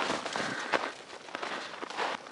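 Footsteps crunching on packed snow, an uneven series of crunches.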